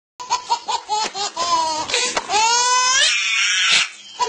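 A person laughing hysterically in rapid, high-pitched bursts that climb into a long rising squeal, then break into a breathy wheeze that cuts off just before the end.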